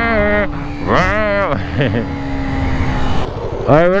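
On-board sound of a Yamaha YZF-R125 single-cylinder 125cc motorcycle being ridden: a steady engine hum under rumbling wind noise on the microphone, with a man's wordless vocal sounds over it.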